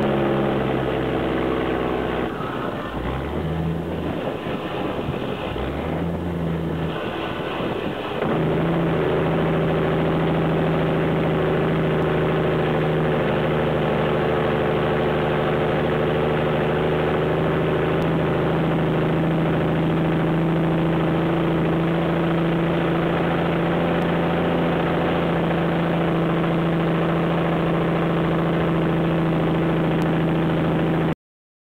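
Loaded Peterbilt logging truck's diesel engine running through loud exhaust pipes as it comes down a steep mountain grade. The engine note breaks up and dips for several seconds, then settles into a steady, louder note about eight seconds in.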